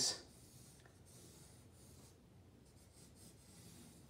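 Faint scratching of a pencil making light sketching strokes on drawing paper.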